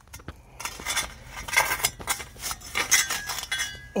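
A steel muffler and exhaust pipe scraping and jabbing into rocky, gravelly dirt, used as a makeshift shovel to dig a hole. The scrapes and knocks are irregular, with metallic clinks against stones and a faint ring from the metal near the end.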